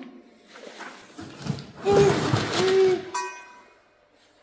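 Cardboard box and paper packing rustling loudly for about two seconds as a cast exhaust manifold is lifted out, with a brief higher scrape near the end.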